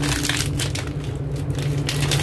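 Foil packet crinkling and rustling in the hands as a sensor is pulled out of it, in a run of quick irregular crackles, over a steady low hum.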